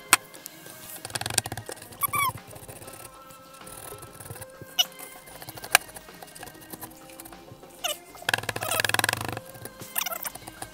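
Wet, softened plaster dig block being squeezed and crumbled by hand in a bowl of water: squelching and squeaky handling with a few sharp clicks, and a louder wet stretch near the end. Background music plays throughout.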